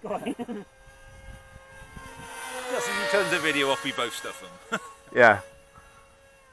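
People's voices, with unclear exclamations and the loudest about five seconds in, over a thin steady whine of small electric RC plane motors in flight that fades out near the end.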